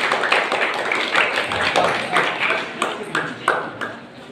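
Table tennis rally: the ball clicking sharply off the rackets and table, several quick strikes near the end, over spectators' voices chattering throughout.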